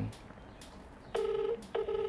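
Electronic telephone ringing tone in a double-ring cadence: two short, flat, buzzy beeps about a second in, close together with a brief gap between them.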